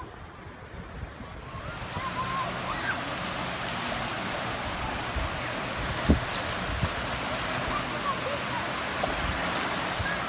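Small lake waves lapping and washing on a sandy shore: a steady rush that grows louder over the first couple of seconds and then holds. A single thump comes about six seconds in.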